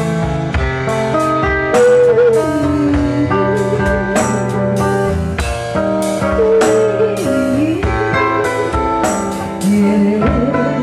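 Live band music: an acoustic-electric guitar playing chords over a drum kit keeping a steady beat, with a wavering, sliding melody line on top.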